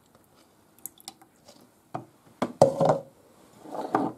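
Plastic kitchenware handled on a countertop: a few light clicks, then louder knocks with a short ringing about two and a half seconds in, as the plastic measuring jug is put down after pouring the milk.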